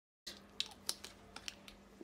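A few light, faint clicks and taps from kitchen utensils handled over a plastic bowl of hibiscus drink, starting about a quarter of a second in.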